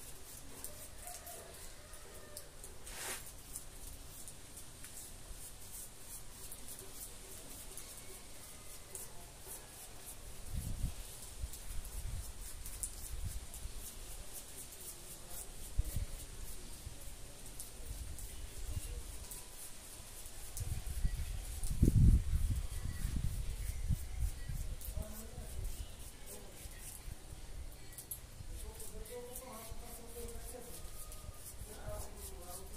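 Paintbrush bristles scrubbing white paint onto a rough cement vase, a soft repeated scratching. Low thuds and rumbles come a few times, loudest about two-thirds of the way in.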